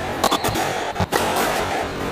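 Squash rally sounds: sharp cracks of the ball off racket and walls, a pair about a quarter second in and another at about one second, with brief high squeaks of court shoes on the wooden floor, over steady background noise.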